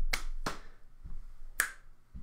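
Body percussion: a hand clap and finger snaps, three sharp hits, demonstrating a stomp-snap-clap ostinato pattern.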